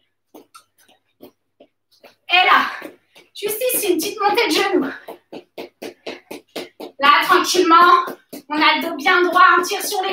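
Shoes landing on the floor in a quick, steady rhythm, about three light taps a second, from alternating scissor-step hops on the toes. A voice comes in over it in several bursts.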